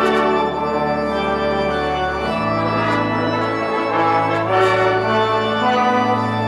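Pipe organ and a brass ensemble of trumpets and trombone playing sustained chords together, with the bass note changing about two seconds in.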